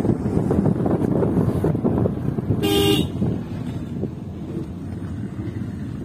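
A vehicle horn sounds once, briefly, a little under three seconds in, over a low rumble of wind and road noise that drops quieter after the toot.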